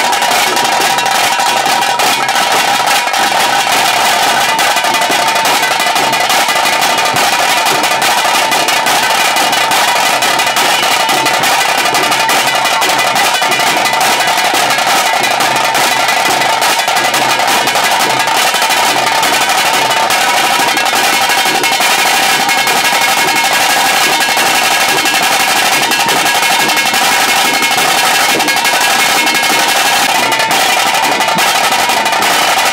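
A tase drum band playing the fast, unbroken huli vesha (tiger dance) beat, loud and steady throughout.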